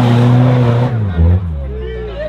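Diesel engine of a 4x4 SUV held at high revs under full throttle on a steep climb, a steady loud note that falls about a second in as the driver lifts off at the top. People's voices follow in the second half.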